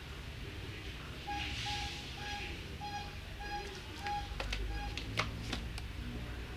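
A series of about seven short electronic beeps on one pitch, evenly spaced at roughly two a second, followed by a few sharp clicks near the end.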